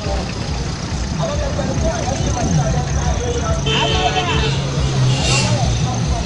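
Roadside traffic in a jam: minibus and van engines idling and creeping, with people talking. One steady engine note holds for about three seconds midway, and a short hiss comes near the end.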